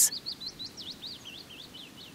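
A small bird singing a quick run of short, high chirps, about five a second, each sweeping down and up in pitch, over a faint, steady hiss of background noise.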